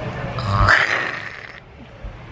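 A short, breathy vocal noise from a young woman, starting about half a second in and lasting under a second.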